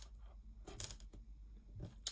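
Faint scattered clicks and small handling noises, with a brief louder rustle about a second in.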